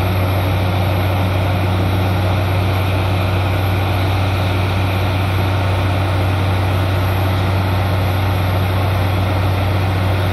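Truck-mounted borewell drilling rig and its air compressor running steadily, a constant loud drone with a strong low hum, as compressed air blows water and rock cuttings up out of a bore that has struck water.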